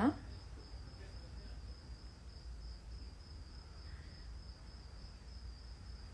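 Crickets trilling steadily in a continuous high-pitched chirp, faint over a low steady hum.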